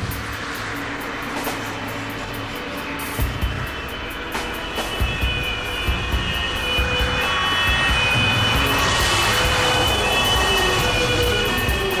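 Background music over the engine and road noise of an ambulance driving, growing louder about halfway through.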